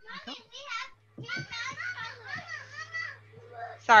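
Young children talking and calling out in high voices close to a home computer microphone, with a steady low hum under them from about a second in.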